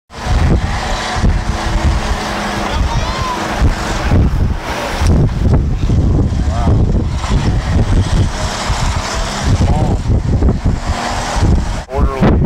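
Ride noise inside a moving vehicle: steady engine and road rumble with gusty wind buffeting the microphone, and brief indistinct voices now and then. The sound starts abruptly at the beginning.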